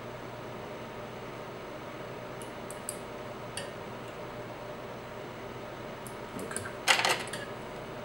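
Small fly-tying scissors snipping feather-fiber ends on a fly: a few faint, sharp clicks over a steady low hum.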